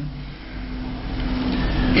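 A pause in speech filled by a steady low hum and rumble of background noise, growing gradually louder. A man's voice comes back in at the very end.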